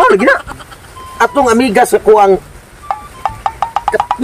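Men's voices talking animatedly. In the last second comes a quick run of about ten clicks over a faint steady tone.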